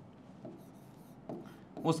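Marker pen writing on a transparent board: a few faint, short squeaks and rubs of the tip as the letters are drawn.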